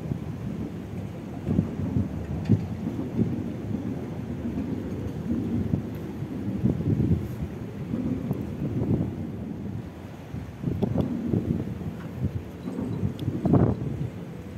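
Wind buffeting the microphone in uneven gusts, a low rumble that rises and falls.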